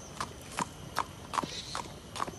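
Hooves of a racehorse walking on a paved road: a steady clip-clop of about five even hoofbeats in two seconds.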